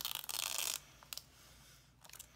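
Washi tape being peeled off a plastic pocket page: a brief ripping noise lasting under a second, followed by a couple of faint ticks.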